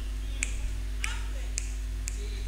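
Four short, sharp snapping clicks at an even pace, a little over half a second apart, over a low steady hum.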